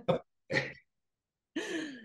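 Short, breathy bursts of laughter from a woman and a man, with dead silence between them. The last burst falls in pitch.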